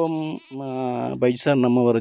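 Speech only: a narrating voice with long, drawn-out syllables.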